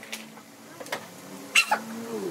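Sharp wooden knocks as cradle panels are handled and set in place, the loudest about one and a half seconds in, followed by a short high squeal, over a low steady hum.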